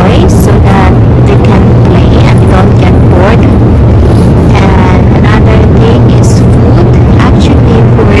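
Airliner cabin noise, a loud steady low drone from the engines and air flow, with a baby making short cooing and babbling sounds over it.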